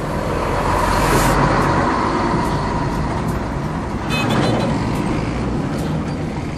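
Steady road-vehicle noise, a continuous rumble of motor traffic with no words over it.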